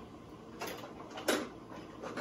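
A food can being opened and handled: two short mechanical scrapes, the second louder, just past a second in.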